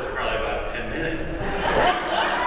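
Speech: a man talking through a microphone, with no other sound standing out.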